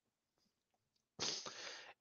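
Near silence, then about a second in a man's short, sharp breath in, lasting under a second, picked up close by a headset microphone.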